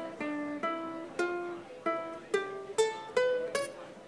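Ukulele played live, single notes plucked one at a time, about eight notes roughly every half second, each ringing briefly and fading, stepping up and down in pitch. It is a short melodic run over a full scale on the fretboard.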